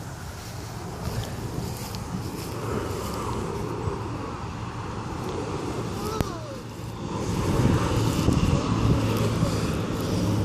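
Wind rumbling on the microphone over a low, steady background noise like distant traffic. It grows louder in the last two or three seconds.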